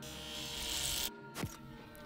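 Electric hair clippers buzzing as they shave through hair, cutting off suddenly about a second in; a single sharp click follows.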